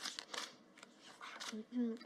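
Playing cards swishing and snapping as they are drawn from a baccarat dealing shoe and slid onto the felt table: a few quick, crisp swishes, with the dealer's voice coming in near the end.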